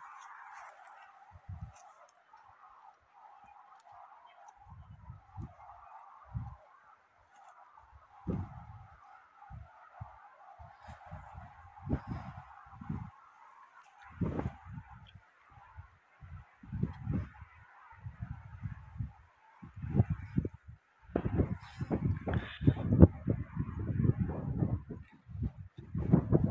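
Wind blowing on an open ridge: a steady, faint rush of air, with irregular gusts buffeting the microphone as low rumbles. The gusts come more often and grow stronger over the last several seconds.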